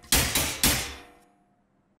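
Metal clanging: a baton struck against the steel bars of a cage three times in quick succession, each hit ringing briefly and dying away within about a second.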